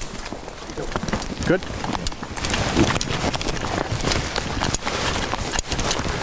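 Steady rustling and scuffing close to the microphone, with many short clicks, as of someone walking through long grass along the bank; a man's voice says one brief word about a second and a half in.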